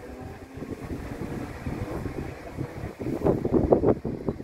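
Class 313 electric multiple unit pulling away and receding, its running noise fading. Wind buffets the microphone in gusts, loudest near the end.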